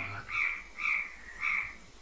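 Frogs croaking in a steady series of short, evenly spaced calls, about two a second.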